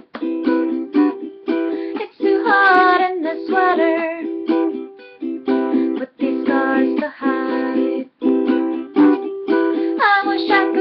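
Ukulele chords strummed in a steady rhythm, recorded in a small room. A voice sings over the strumming for a few seconds in the middle.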